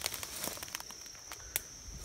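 Footsteps and rustling through leafy, thorny undergrowth, a string of short crackles and snaps, over a steady high insect drone.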